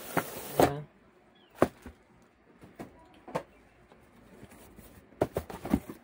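A plastic bag rustles and crinkles for the first second. Then a cardboard graphics-card box is handled and its lid opened, with scattered taps and knocks and a quick run of them near the end.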